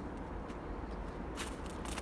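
Steady low outdoor rumble with a quick run of sharp clicks or crunches about one and a half seconds in.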